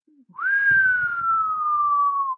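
A man whistles one long note of amazement, rising quickly at the start and then sliding slowly down in pitch.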